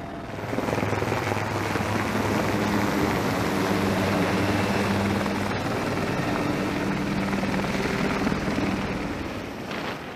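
AH-1Z Viper attack helicopter running: steady rotor and turbine noise over a low, even drone, easing off somewhat near the end.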